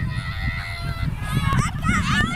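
Children's high-pitched shouts and calls, several voices rising and falling, growing busier near the end.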